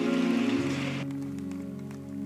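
Congregation applauding over soft sustained background music; the applause dies away about a second in while the held chords carry on.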